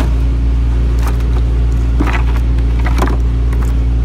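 Refrigeration unit of a reefer trailer running with a steady, even low drone, with a few light knocks heard over it.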